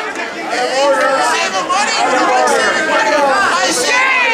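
Many voices talking over one another at once: loud, continuous overlapping chatter with no single speaker standing out.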